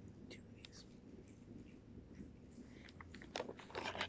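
A person faintly chewing a crunchy cookie, with a few light crinkles of its plastic wrapper; the crunching and crackling get louder in the last second.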